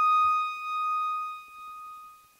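The final high note of a solo piano piece ringing on after the chord beneath it has died, wavering slowly in loudness and fading away.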